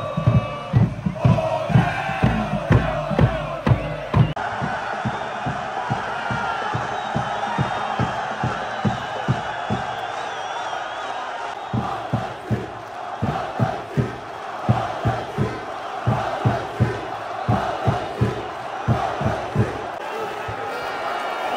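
Football supporters' crowd chanting and cheering in a stadium, with a bass drum beating a steady rhythm of about two beats a second. The drum stops about four seconds in and comes back around twelve seconds, leaving only the crowd's chanting in between.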